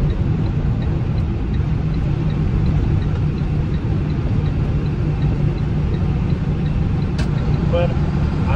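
Car cabin noise while driving on a snowy road: a steady low rumble of engine and tyres, with a faint regular ticking about three times a second.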